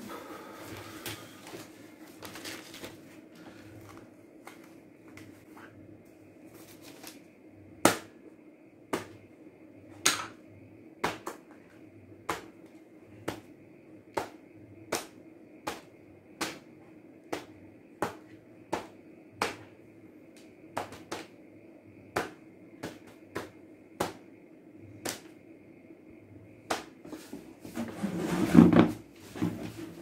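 A series of sharp clicks, roughly two a second and slightly uneven, over a faint steady hum; a louder jumble of noise comes near the end.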